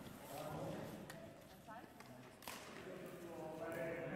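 Faint, indistinct voices talking in a large hall, with a couple of sharp knocks, one about a second in and a louder one about two and a half seconds in.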